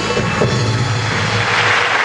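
Audience applauding in a concert hall as the band's last note dies away, the applause swelling toward the end.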